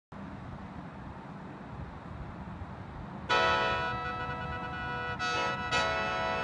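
Lao khaen (bamboo free-reed mouth organ) beginning to play about three seconds in: many reeds sounding together as a sustained chord with drone notes, with a short break about five seconds in. Before it there is only a steady low background hum.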